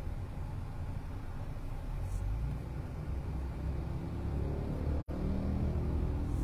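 Low, steady road and engine rumble inside the cabin of a Hyundai car driving along a street. The sound cuts out for an instant about five seconds in.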